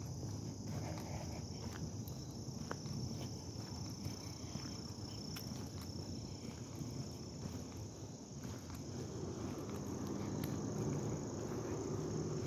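Crickets singing in a steady, unbroken high-pitched chorus, with footsteps on the paved road underneath.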